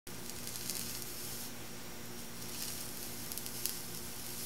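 Hot dog sizzling as electric current from a welder passes through it between two filler-rod electrodes: a steady hiss with a few sharp crackles, over a low steady hum.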